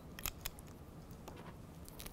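A few faint clicks and taps from a pen and paper being handled on a desk: a short cluster near the start, then a couple of fainter ones later.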